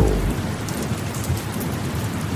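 Steady rain, with a low rumble of thunder dying away in the first moments.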